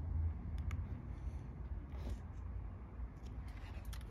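A few faint clicks and light handling noises from the plant pot, its label and its plastic wrapping, over a steady low rumble.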